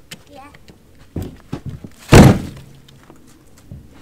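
A log round of firewood dropped into the plastic bed of a utility vehicle, landing with one loud, heavy thunk about two seconds in. A lighter knock comes about a second earlier.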